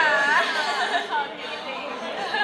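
Speech: people talking, the voices loudest in the first second or so.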